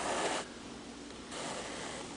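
Double strand of embroidery thread drawn through the stitches on a hoop-stretched fabric: a short rustling swish at the start, then a softer, longer one in the second half.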